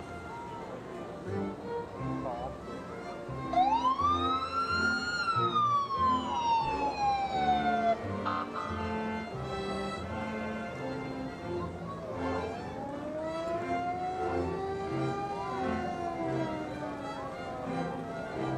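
Parade vehicle siren giving one wail, rising quickly and then falling away over about four seconds, followed later by a second, lower and slower rise and fall. Music and crowd sounds run underneath.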